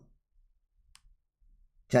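Near silence with one faint, short click about a second in; a man's voice starts again near the end.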